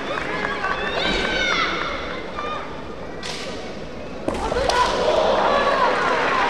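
Kendo fighters' drawn-out, bending kiai shouts. There is a short sharp noise about three seconds in, and a sudden knock just after four seconds starts a second round of shouting.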